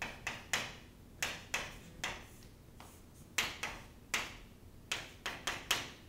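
Chalk writing on a chalkboard: about a dozen irregular, sharp taps and short scrapes as the lines of a structure are drawn.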